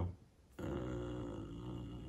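A man's long, drawn-out "uhhh" of hesitation, held at one steady low pitch, starting about half a second in.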